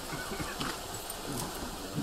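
Quiet hall ambience with faint, scattered movement sounds from an audience standing still.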